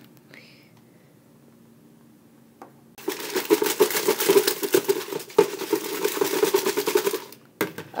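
Foil blind bags shaken and tumbled around inside a plastic bucket to mix them up: a dense, rapid rattling and crinkling that starts about three seconds in and lasts about four seconds.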